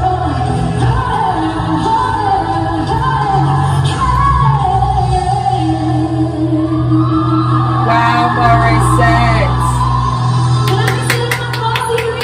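A live female vocal with band accompaniment builds through a ballad's climax to long high notes. Evenly spaced handclaps come in near the end.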